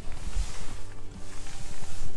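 Background music under a steady hiss, with small scattered ticks and rustles.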